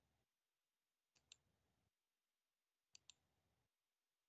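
Near silence with faint clicks in two quick pairs, one about a second in and the other near three seconds.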